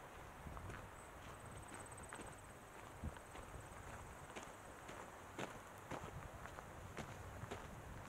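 A hiker's footsteps on a dirt trail at a steady walking pace: faint, irregular footfalls about every half second to a second.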